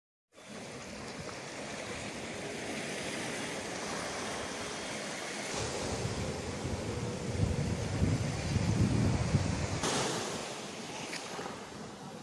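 Sea surf breaking and washing up a beach, a steady wash that swells in the middle, with some wind on the microphone. The sound cuts out for a moment at the very start.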